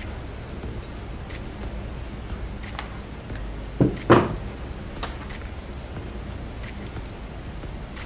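Hands handling a clear ornament and its holly sprig on a tabletop: scattered light clicks and taps over a steady room hum, with a sharp click and then two louder knocks about four seconds in.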